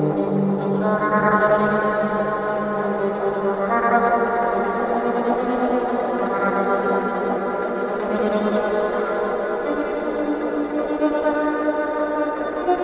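Electric violin playing a slow, mournful melody of long held notes, a new note entering every few seconds, over a low sustained note that drops away about two-thirds of the way through.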